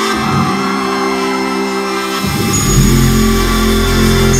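A live band playing an instrumental passage with no singing: held, sustained chords, joined about two and a half seconds in by deep, heavy bass notes.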